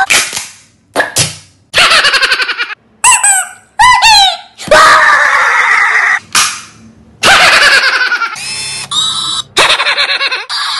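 A man screaming and yelling in short, loud bursts, with a run of high, falling squeals about three seconds in.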